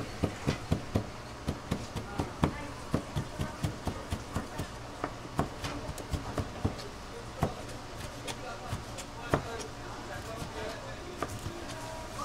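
Knife chopping raw stingray meat on a plastic cutting board: a quick series of sharp knocks, about four a second at first, then sparser and more irregular.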